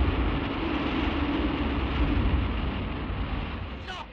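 Loud, steady low rumbling roar of a special-effects sound, like a blast or storm, fading away in the last second.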